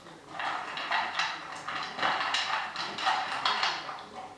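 Beagle eating dry kibble from a small bowl: a quick, uneven run of crunching bites, about two or three a second.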